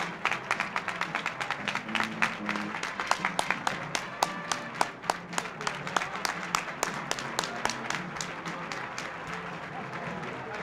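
A crowd applauding, with many hand claps that thin out over the last couple of seconds. Music plays underneath.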